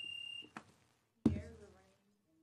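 A steady, high-pitched electronic beep that cuts off about half a second in. Just over a second in comes a single loud thump that dies away quickly.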